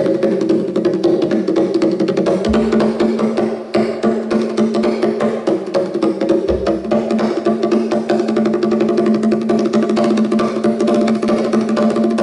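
Fast hand drumming on hand drums in a folk band, dense rapid strokes over sustained low instrumental notes, with a lower note joining about two and a half seconds in.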